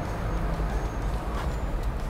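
A steady low rumble of outdoor background noise, with a few faint ticks.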